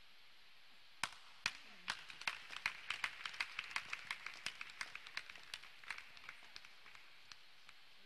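Faint scattered hand clapping: a few single claps about a second in, then a quicker run of claps that thins out and stops near the end.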